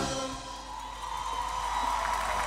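A live band's song ends: the last notes ring out over a held note while a large concert crowd begins to cheer, building toward applause.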